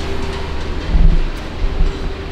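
Handling noise of a handheld camera carried while walking: a low rumble with dull thumps about a second in and near the end, over a faint steady hum.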